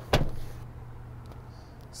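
A single sharp knock just after the start, dying away within about half a second, over a faint steady low hum.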